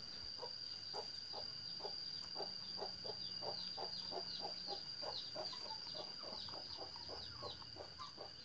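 A rabbit chewing papaya leaves, about three short crunchy chews a second, against a steady high chirring of crickets.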